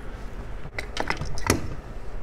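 A few light metallic clicks and clinks, the loudest about one and a half seconds in, from hands working at the ignition coil plate assembly of a Rotax 582UL engine to take it off.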